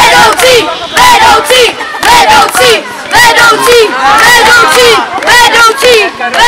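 A group of children chanting a cheer in unison, loud shouted syllables repeating about twice a second.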